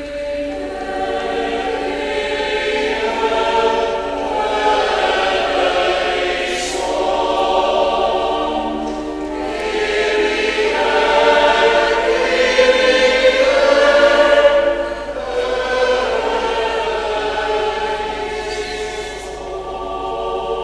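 A choir singing a slow sung response to a litany petition, in long held phrases.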